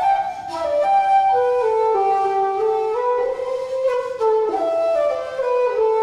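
Solo wooden transverse flute playing a melody, the notes moving up and down by steps and held about half a second to a second each.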